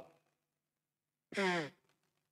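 A man's voice gives one short, breathy vocal sound falling in pitch about a second and a half in, after a pause.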